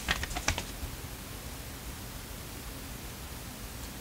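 A quick run of small sharp clicks from handling a perfume sample vial and paper blotter while dabbing the scent on, then a steady faint low hum of room noise.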